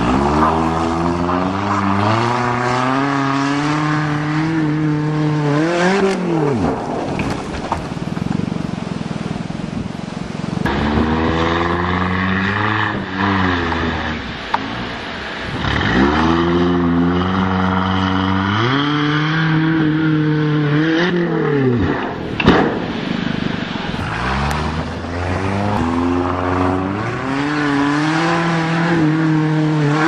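1992 Toyota Corolla engine pulling hard four times over, the revs climbing in steps for several seconds and then dropping away sharply each time. A few short knocks come between runs.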